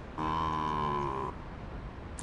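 A voiced zombie growl, held for about a second, with its pitch dipping slightly at the end.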